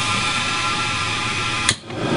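UOP Callidus Scepter gas pilot burner starting up: a steady buzzing hiss from its high-energy spark ignition and gas flow, cut off by a sharp click near the end as the pilot lights.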